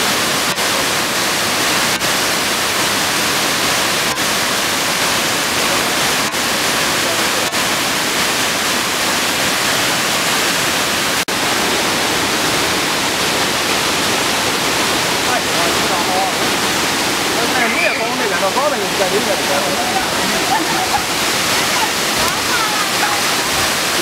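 Waterfall: a loud, steady rush of falling water, briefly dropping out about eleven seconds in.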